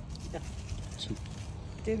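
Outdoor background with a steady low rumble and brief snatches of voices. A nearer voice starts right at the end.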